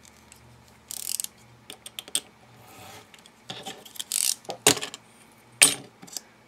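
A snap-off craft knife cutting paper along a metal ruler on a cutting mat: several short scrapes and clicks, the loudest two sharp clicks in the last second and a half.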